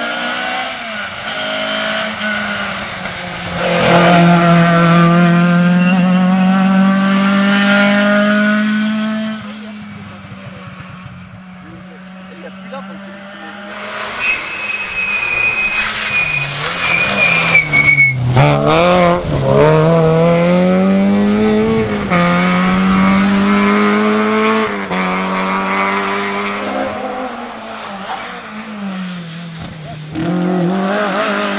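Rally cars on a tarmac special stage coming through one after another at full throttle, engines revving hard and climbing through the gears with quick drops in pitch at each shift. One car is loudest in the first third and another in the middle, with a quieter gap between them.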